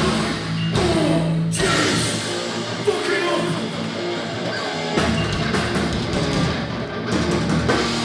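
Hardcore punk band playing live: distorted electric guitars, bass and a drum kit.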